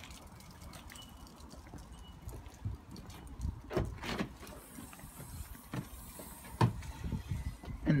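Low wind rumble on the microphone with a few scattered knocks, then a sharp click about two-thirds of the way in as the Mitsubishi ASX's tailgate latch releases.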